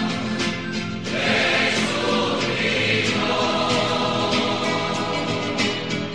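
A choir singing a Christian song over instrumental accompaniment.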